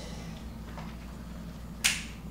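Quiet room with a low steady hum, and one short, sharp mouth click, a man's lips parting, near the end as he draws breath to speak again.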